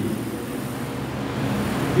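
Steady, even background noise of a large hall with no clear voice.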